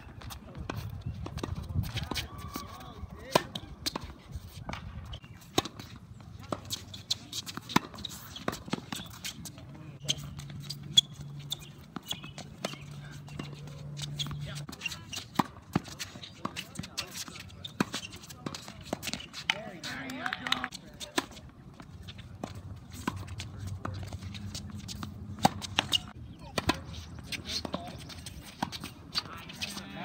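Tennis balls struck by rackets and bouncing on an outdoor hard court: sharp pops at irregular intervals, several rallies at once, with faint voices behind.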